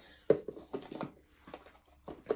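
Cardboard advent-calendar boxes being handled and pushed back into their slots: a run of light taps and knocks, about eight in two seconds.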